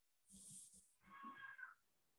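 Near silence, broken by a faint short hiss and then, about a second in, a faint brief high-pitched call lasting under a second.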